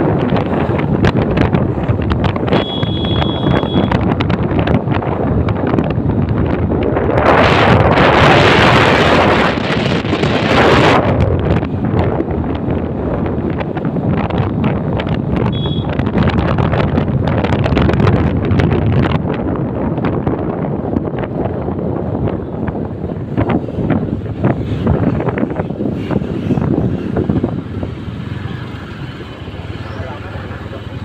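Wind buffeting the microphone on a moving motorcycle, over the bike's engine and road noise, with a louder rush of wind about eight to eleven seconds in. A short high beep sounds about three seconds in, and the noise eases near the end as the bike slows.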